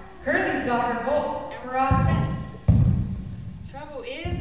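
A young actor's voice speaking with wide swings in pitch, then two dull low thuds about halfway through, the second one the louder.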